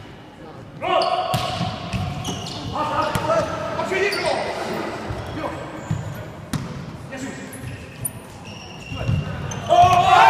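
Indoor volleyball rally in a large echoing hall: ball strikes and the squeak of players' shoes on the court, with players shouting throughout and a loud burst of shouting near the end as the point is won.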